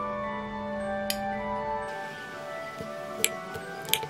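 Instrumental background music with steady held notes, and three sharp clicks of a knife against a wooden cutting board while slicing a chocolate-glazed cake, the loudest two near the end.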